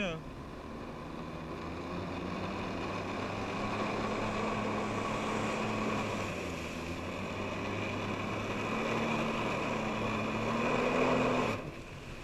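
Personal watercraft engine running at high throttle to pump water up the hose to a flyboard, with the steady rush of water spraying from the board's jets. The engine and the spray cut off suddenly near the end.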